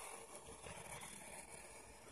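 Faint pencil scratching on paper while drawing, a low, even texture with no distinct strokes standing out.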